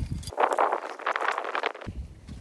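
Hands scraping and pressing loose, dry sand, a gritty crunching rustle lasting about a second and a half.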